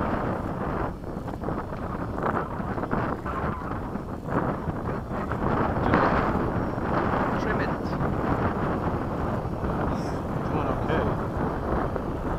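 Wind buffeting the camera microphone, a rumbling noise that rises and falls in gusts.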